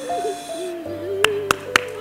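Slow background music of held, sustained tones. Three sharp clicks come about a quarter second apart in the second half.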